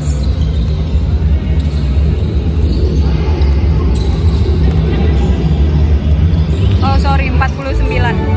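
Background music with a heavy, steady bass, with a few basketball bounces on a gym floor underneath.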